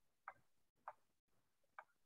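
Three faint, short computer mouse clicks, irregularly spaced, made while annotating a document on screen.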